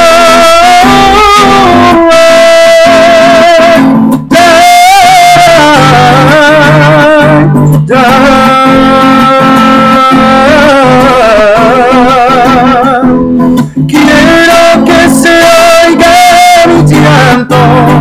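A man singing long held notes with a strong wavering vibrato over a strummed acoustic guitar. The vocal line breaks off briefly about 4, 8 and 13 seconds in.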